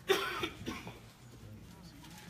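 A person coughing: one loud, sharp cough just after the start, followed by a weaker second cough about half a second later.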